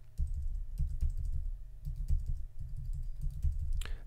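Computer keyboard keys tapped in a quick, uneven run of light clicks with dull low thuds, the sound of small adjustments being keyed in.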